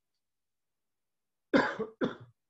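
Near silence, then a person's cough about one and a half seconds in, in two short bursts.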